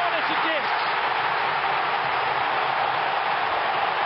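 Stadium crowd cheering a goal, a loud, steady roar.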